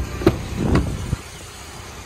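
Rear door of a 2016 Ford F-150 crew cab being opened by its outside handle: a sharp latch click as it releases, a second click a moment later, then a rustle and a soft knock about a second in. A steady low rumble runs underneath.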